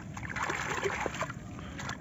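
Water splashing and sloshing as a hand swishes a toy figure about under the water of a shallow stream, with small irregular splashes.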